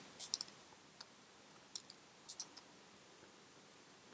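Faint, scattered clicks and taps of a stylus on a pen tablet while handwriting, with several small clicks in the first half second and a few more around one to two and a half seconds in.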